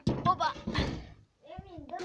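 A door being shut with a bang at the very start, followed by a moment of rustling handling noise, with a man talking over it.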